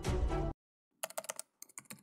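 Background music cutting off abruptly about half a second in, then a quick run of computer keyboard key clicks: typing, in two short bursts.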